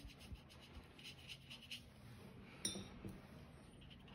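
Faint scratchy strokes of a damp paintbrush working watercolour-pencil pigment across watercolour paper, with one sharp click about two-thirds of the way through.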